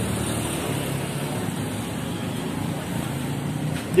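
Steady street traffic noise: a low, continuous rumble of motorbike and car engines from the road.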